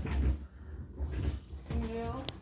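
Low, uneven handling noise with a few faint knocks, and a person's brief voiced sound near the end.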